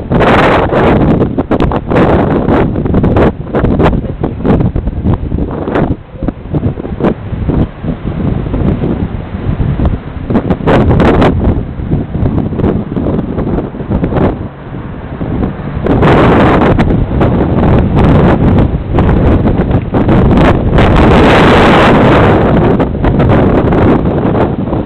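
Strong wind of a dust storm blasting across the microphone in uneven, loud gusts, becoming heavier and more continuous about two-thirds of the way through.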